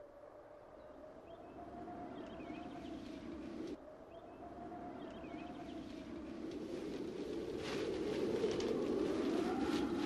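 Drama soundtrack bed: a faint wavering held tone over a low noisy rumble that grows steadily louder, with a few sharp knocks near the end.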